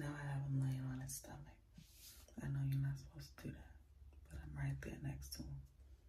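A woman talking in a low, hushed voice, in short phrases with pauses between them.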